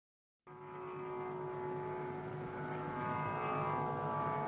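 Tanpura drone: a steady chord of tones on one pitch that comes in about half a second in, out of silence, and holds without change.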